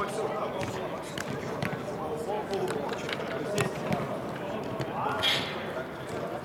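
A football being kicked several times on an indoor artificial-turf pitch, sharp separate knocks, over players' voices calling across a large hall, with one louder shout about five seconds in.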